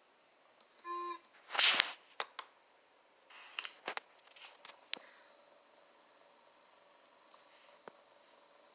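Rustling, a few clicks and a short burst of noise as a phone is moved about by hand, after a brief tone about a second in. A faint steady high whine runs underneath.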